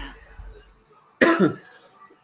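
A man's single harsh cough about a second in, the kind that follows a hit of cannabis concentrate from a dab rig.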